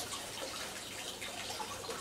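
Water from a hose running into a fish tank, a faint, steady trickle.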